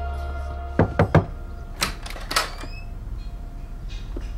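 Sitar-led background music with a steady drone cuts off about a second in, followed at once by three quick knocks. A few more scattered clicks and knocks come over the next second or so.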